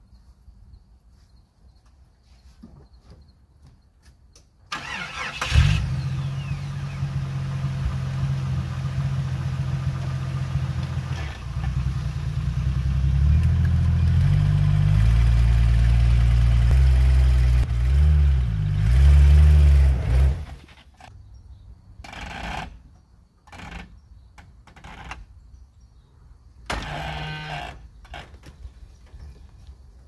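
Jeep Wrangler engine starting about five seconds in and running, then revved harder with its pitch rising and falling as it works, before stopping abruptly about twenty seconds in. A few short bumps follow.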